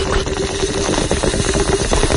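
Bong hit sound effect: water bubbling rapidly and continuously through a bong, with a steady tone running under it.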